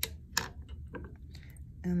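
Sharp clicks and light taps of hand tools being set down and picked up on a work table: two clear clicks in the first half second, then a few fainter ticks.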